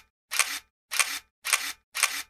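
Camera shutter firing over and over, about two shots a second, each shot a quick double click.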